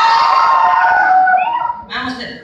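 A man's voice through a microphone and PA making one long, high, howl-like call, held and then falling away near the end, followed by a sharp click.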